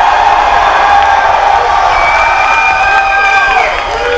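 Concert crowd cheering, whooping and shouting as a song ends, with a few held tones sounding over the noise.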